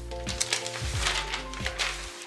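Background music with steady held tones, over which paper pattern sheets rustle briefly a couple of times as they are handled.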